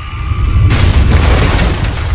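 A loud movie explosion: a deep rumbling boom that swells into a full roar less than a second in and keeps rumbling.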